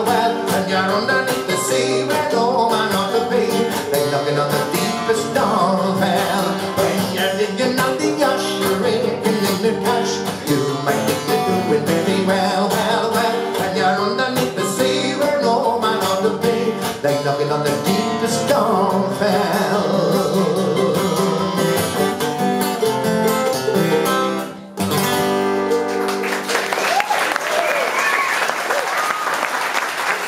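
A man singing a folk song with strummed acoustic guitar and mandolin, the song ending abruptly about 25 seconds in. Audience applause follows.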